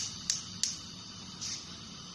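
Gas stove burner's spark igniter clicking, about three sharp ticks a second, stopping about two-thirds of a second in as the burner catches, leaving a faint steady hiss.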